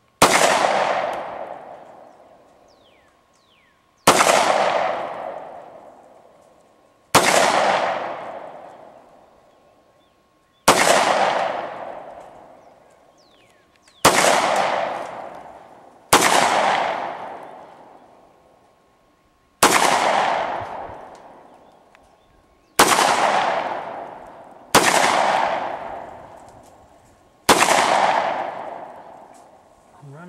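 CZ P-07 Duty 9mm pistol firing ten single shots in slow, aimed fire a few seconds apart, each shot trailing off in about two seconds of echo.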